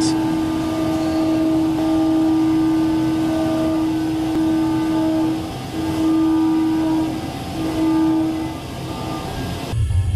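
Mazak multitasking CNC lathe running: a steady humming whine from its spindle drives, with a higher tone coming and going. The whine breaks off and returns a few times in the second half as the second spindle moves in for a part transfer. Just before the end it gives way abruptly to a deep rumble.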